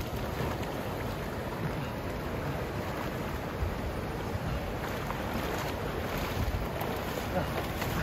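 Water splashing and sloshing as a person swims through a shallow river and then stands and wades out through the shallows, over a steady rush of wind on the microphone.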